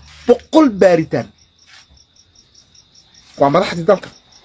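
A cricket chirping: a steady high trill pulsing about five times a second, heard alone in a gap in a man's speech.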